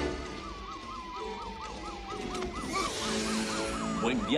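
Police sirens: one yelping in quick rising-and-falling sweeps, about three to four a second, while another wails slowly down in pitch, over film score music.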